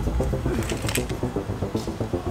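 Background music with a quick run of short, staccato notes over a low bass.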